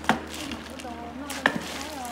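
Two sharp knocks of a wooden paddle against a large metal pot while crawfish and herbs are being tossed, the first right at the start and the second about a second and a half later.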